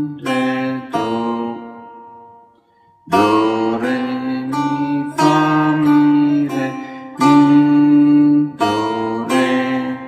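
Setar played on its first string: a simple exercise of single plucked notes in three-four time. The notes die away about a second and a half in, and after a short gap the playing resumes about three seconds in.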